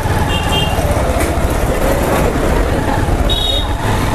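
Honda motorcycle running as it rides along a road, a steady low rumble of engine and road noise. Two short high horn toots, one just after the start and one near the end.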